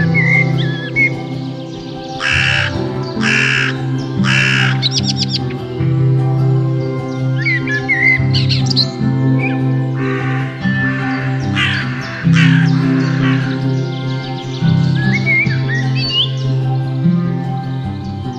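Soft ambient background music with forest bird calls over it. Three harsh, rasping calls come in quick succession about two to four seconds in, and more harsh calls follow around the middle. Short chirping songbird phrases come and go throughout.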